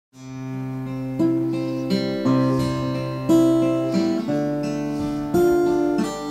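Steel-string acoustic guitar playing the slow opening of a song, with no voice yet. Chords are struck about once a second and left to ring; the sound rises from silence at the very start.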